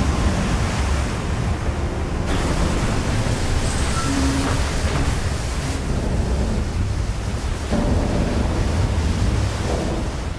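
Sound effect of a large explosion at sea: a loud, steady roar of blast and falling spray with a deep rumble underneath.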